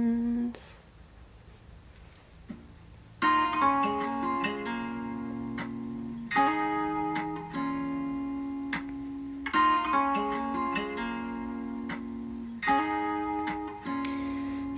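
A held sung note ends, then after a short quiet pause an acoustic guitar comes in about three seconds in, striking chords roughly every three seconds and letting them ring between strokes.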